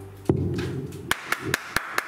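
A last low note of the music fades. Then, from about a second in, hands clap in an even rhythm, about four or five claps a second.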